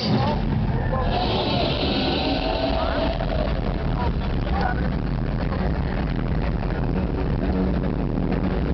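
Loud electronic dance music over a large festival sound system, carried by a dense, steady bass, with shouting voices in the crowd. A hiss-like rush stands out between about one and three seconds in.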